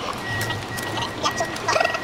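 Clear plastic clamshell food container being pried open by hand, its lid crackling and squeaking in irregular bursts, loudest shortly before the end.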